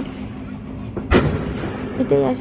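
A single bang from an aerial firework bursting, a sharp report a little over a second in with a brief tail after it.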